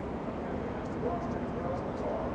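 Steady race-track pit-road background noise, with faint distant voices in it.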